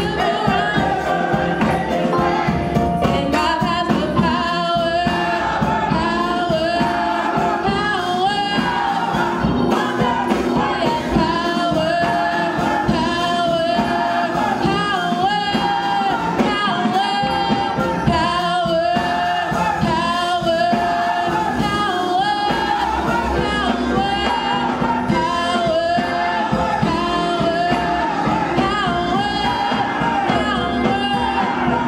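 A woman singing a gospel song solo into a handheld microphone, holding long notes with vibrato and pausing briefly between phrases.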